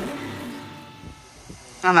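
Speech only: a voice trailing off into a short quiet stretch, then a man starts talking again near the end.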